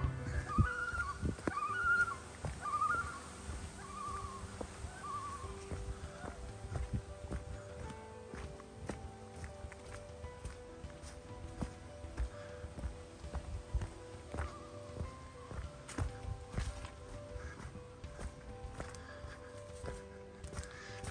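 Footsteps of a hiker walking on a forest dirt trail, a steady run of soft thuds at walking pace, under quiet background music of held notes.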